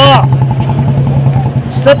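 A steady low hum over outdoor background noise, in a pause between a man's words; the hum fades shortly before his voice comes back near the end.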